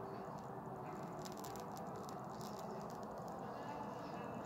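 Quiet room hiss with a few faint crackling ticks, clustered about a second in and scattered later, as a man draws on a lit cigarette.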